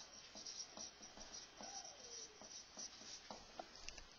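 Marker pen writing on a whiteboard: a run of short, faint stroke and tap sounds with a few brief squeaks as the letters and numbers are drawn.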